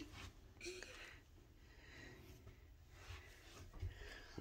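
Near silence: room tone, with a faint word murmured about half a second in.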